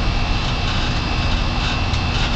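A boat's engine running steadily under way, heard on board as a low rumble with a steady hiss over it.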